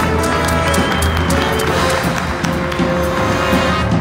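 Live big band playing a swing arrangement, with a trumpet playing out front over the band.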